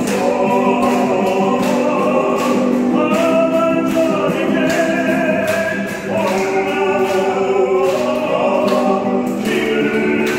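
Live Korean Catholic devotional song: voices singing to a strummed acoustic guitar, through a microphone and loudspeakers in a large hall.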